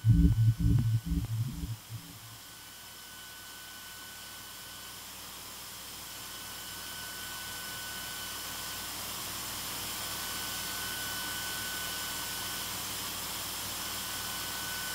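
Electronic music: a throbbing low synth beat dies away over the first two seconds. A hiss of synthesized white noise then slowly swells, with faint thin high tones coming and going.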